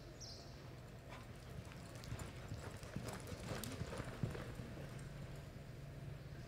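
Reining horse's hoofbeats on arena dirt as it moves off into a lope. The hoofbeats start about a second in and grow quicker and louder, with the loudest around four seconds in.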